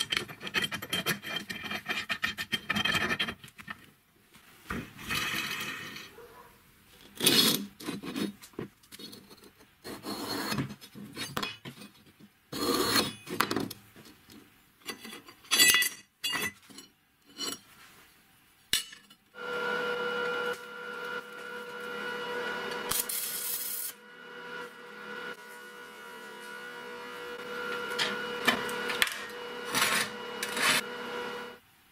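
Steel parts of a homemade roller tool handled on a wooden workbench: irregular clinks, knocks and scraping of metal on metal and wood. About two-thirds of the way in, a steadier, continuous sound with a few held ringing tones takes over.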